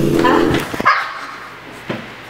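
Background music stops about half a second in, followed by a short, sharp yelp from a person's voice, then a small click near the end.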